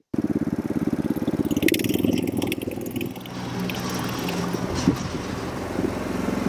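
Small gasoline engine of a Yardmax tracked power wheelbarrow (track dumper) running under load as it climbs a steep 6:12 wooden ramp into a shed. A few clanks sound from the machine and ramp, about two seconds in and again near the end.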